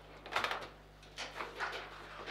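Table football in play: the ball knocks against the plastic player figures and rods, with a quick cluster of sharp knocks about half a second in and a few lighter clacks after a second.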